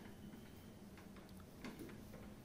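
Near silence with a few faint, irregular clicks as hands handle the purifier's plastic tubing and fittings, over a faint steady hum.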